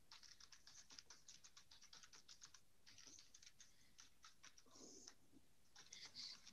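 Faint typing on a computer keyboard: quick runs of key clicks with a short pause about halfway through.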